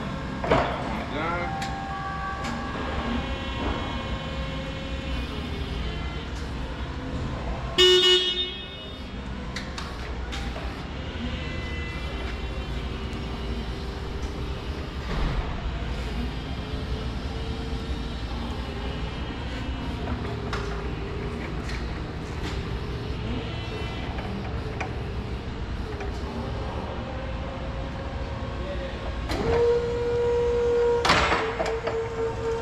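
Bendi B30 48-volt electric forklift driving about, its drive motor whining and shifting in pitch over a steady low hum. A short loud horn beep about eight seconds in. Near the end a louder, steady hydraulic pump whine starts as the mast lifts.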